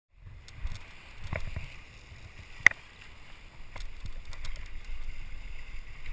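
Boat at sea: a steady low rumble of hull, water and wind with a constant hiss, broken by a few sharp clicks, the loudest about two and a half seconds in.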